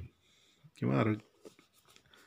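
A man's voice says one short word about a second in, with faint light scratching and ticks of a pen tip moving over a book page around it.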